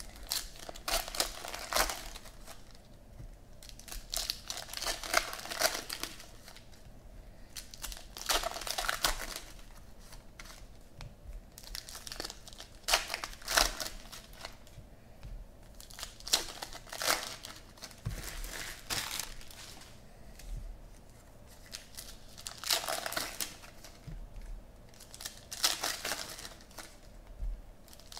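Foil trading-card pack wrappers being torn open and crinkled by hand, in irregular bursts every few seconds.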